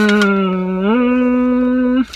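A woman humming a long held note that dips slightly, then steps up to a higher held note about a second in.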